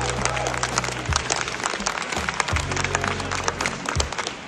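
An audience applauding, many hands clapping at once, over music with low sustained bass notes.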